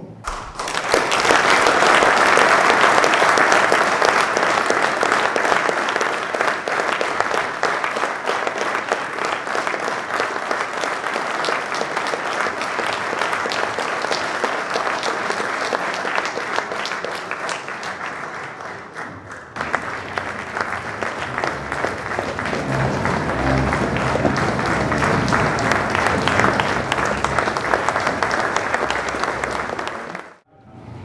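A large audience clapping, one long round of applause with a brief dip about two-thirds of the way through.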